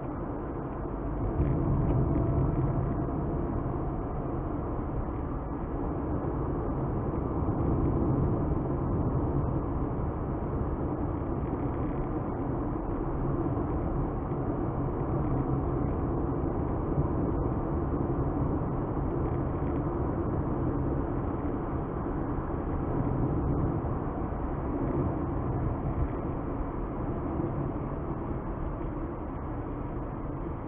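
Steady road and engine noise inside a moving car, heard through a dashcam's microphone; it grows a little louder about a second and a half in.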